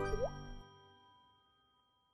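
The closing notes of a channel logo jingle: sustained bright tones with a short rising blip just after the start, ringing out and fading to silence within about a second and a half.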